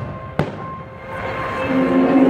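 A single firework bang about half a second in, over the fireworks show's music. The music dips and then swells back up near the end.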